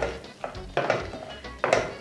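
Wooden spoon stirring chunks of goat meat in a pot, with a few knocks and scrapes against the pot, over background music.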